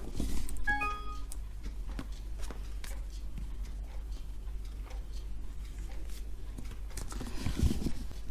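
Smartphone's short chime of a few quick notes as it starts charging wirelessly on the power station's charging pad. After it come only faint handling clicks over a low hum.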